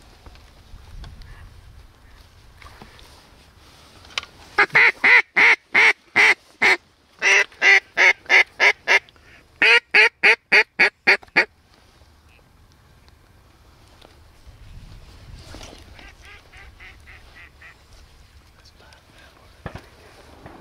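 Mallard duck call blown in three loud runs of hen quacks, about four to eleven seconds in, the notes coming quicker in the later runs. A fainter run of the same quacks follows a few seconds later.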